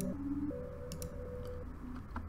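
Soft synth melody playing back: a few sustained notes that change pitch every half second or so, with light clicks scattered through it.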